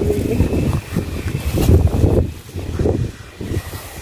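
Wind buffeting the microphone outdoors: an irregular, gusting low rumble.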